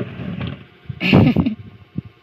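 A tortoiseshell cat hissing, one sharp burst about a second in: a defensive warning from the cornered cat.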